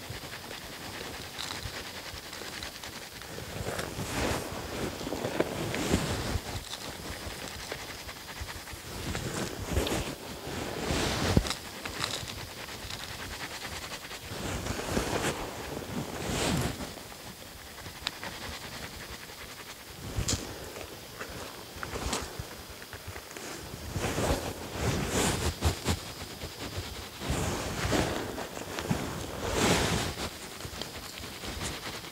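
Gloved hands scooping and crumbling dry soil, letting it sift down over a buried wild dog trap to cover its plate: irregular rustling and scraping in short bursts.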